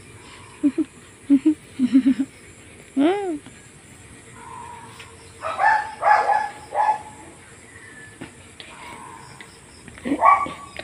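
Animal calls: a few short low calls, a single rising-and-falling call about three seconds in, and a louder run of calls around six seconds.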